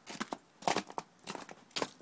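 Snow crunching in a run of short, irregular crunches and clicks close to the microphone.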